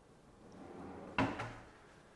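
Kitchen cabinet pull-out waste-bin drawer sliding shut on its runners, ending in a sharp thump as it closes against the cabinet a little over a second in.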